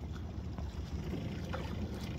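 Steady low wind rumble on the microphone, with faint splashing of a bull caribou wading through shallow water, one small splash about one and a half seconds in.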